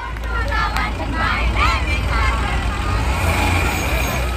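An open safari vehicle's engine running as it drives along a track, a steady low rumble, with passengers' voices calling and chattering over it.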